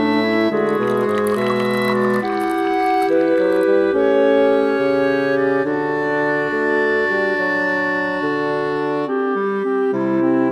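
Background music: a slow melody carried by a woodwind, clarinet-like, over sustained accompanying notes.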